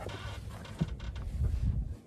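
Rustling and a few light knocks as a person lowers himself into a small car's driver's seat, over a low rumble of wind on the microphone.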